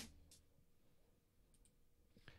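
Near silence. The intro music cuts off right at the start, leaving only a couple of faint ticks.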